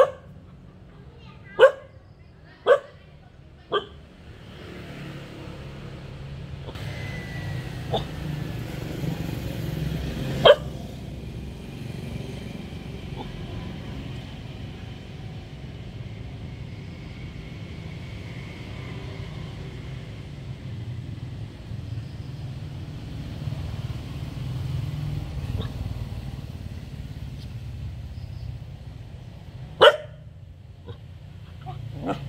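A dog barking in short single barks, about four in the first four seconds, one more about ten seconds in and another at the very end. A steady low rumble sets in after the first few barks and runs beneath the rest.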